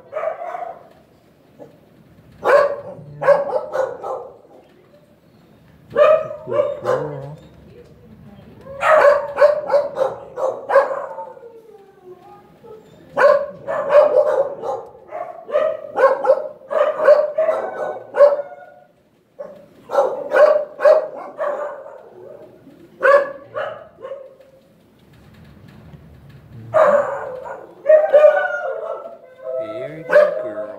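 A dog barking and yipping in repeated bouts of quick, pitched barks, each bout a second or two long, with short pauses between them.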